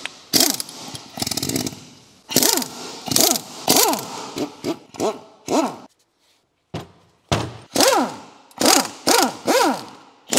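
Impact wrench on the nuts of a Mazda MX-5 rear differential, run in short repeated bursts, each with a quick rise and fall in pitch. There is a brief pause about six seconds in, then a quicker run of bursts.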